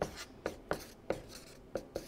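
Felt-tip marker writing on flip-chart paper: a series of short strokes, about two or three a second.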